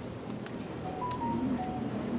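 A few faint, short electronic beeps at slightly different pitches, about a second in, over the quiet room tone of a hall.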